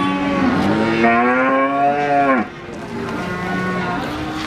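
Cattle mooing: a long, loud moo that rises and then falls in pitch and breaks off about two and a half seconds in, followed by a fainter, steadier lowing.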